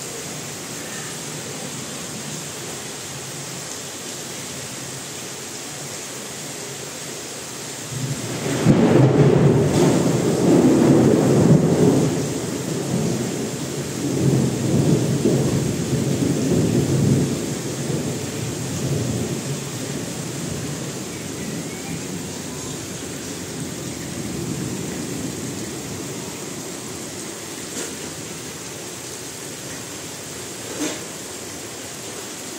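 Heavy rain falling steadily, with a long roll of thunder starting suddenly about eight seconds in. The rumble is loudest for a few seconds, swells again, then dies away into the rain.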